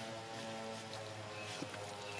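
A steady low hum holding one constant pitch.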